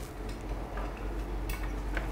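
Faint handling noise of a circuit board in its plastic case being held and turned in the hand, with light ticks and one small click about one and a half seconds in, over a low steady hum.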